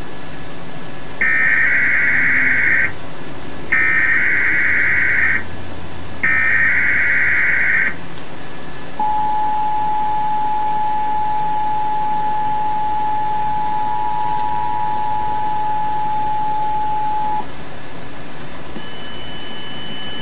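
Emergency Alert System test signal from a television: three bursts of the SAME digital header, a warbling data tone about 1.7 s each, then the steady two-tone attention signal for about eight and a half seconds.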